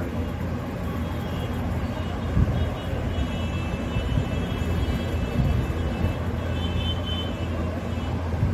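Steady low rumbling background noise, with faint high tones coming in about three seconds in.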